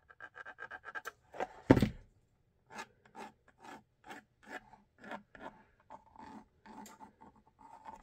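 Short scratchy strokes of a white marking pencil drawn across a textured thermoplastic holster shell, tracing the trim line to be cut. The strokes come quickly at first, then at about two or three a second, with one louder knock a little under two seconds in.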